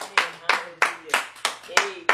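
A woman clapping her hands in a steady rhythm, about three claps a second.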